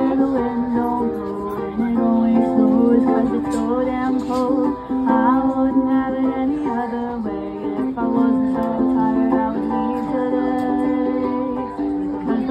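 Ukulele strummed in steady chords with a woman singing over it: a solo acoustic song played live.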